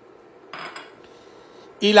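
A short scraping rustle about half a second in as uncooked rice is tipped and pushed from a plastic bowl into a pot of bean broth.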